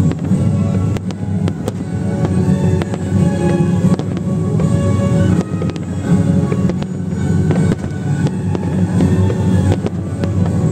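Aerial firework shells bursting in a dense barrage: many sharp bangs in quick, irregular succession, with music playing loudly underneath.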